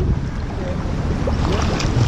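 Pool water splashing and sloshing as a swimmer makes freestyle arm strokes close to the microphone.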